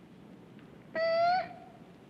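A woman's disguised voice gives one high, held vocal note of about half a second, about a second in, rising slightly at its end. It is a wordless answer of yes to a question.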